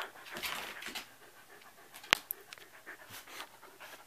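Shetland sheepdog panting close to the microphone, with one sharp click about halfway through.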